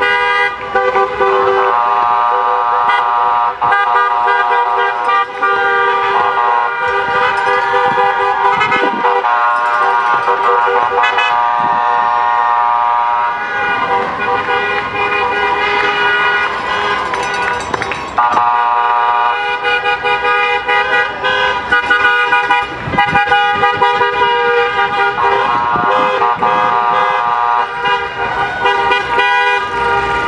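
Car horns honking almost without a break, several at once at different pitches, from a slow line of passing cars, with voices shouting over them.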